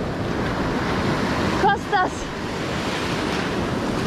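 Surf breaking and washing up a sandy beach, with wind buffeting the microphone. A brief pitched call, a voice or bird, cuts through a little under two seconds in.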